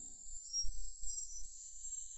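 Background music fading out in the first half second, leaving a quiet gap with a faint low rumble and faint high-pitched chirping.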